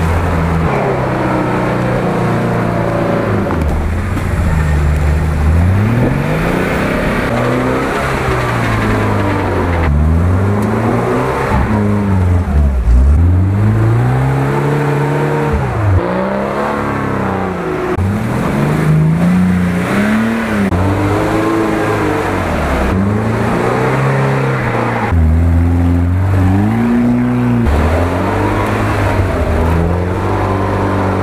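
A lifted off-road 4x4 on mud tyres, its engine revving up and falling back again and again as it works through a deep muddy rut.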